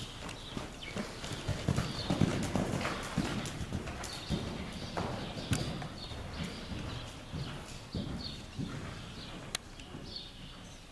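Hoofbeats of a Thoroughbred horse trotting on the sand footing of an indoor arena: dull, irregular thuds, loudest in the first few seconds and growing fainter as the horse moves away.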